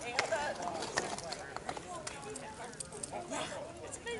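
Several riders' voices talking at a distance, with scattered clicks of horses' hooves on the paved road.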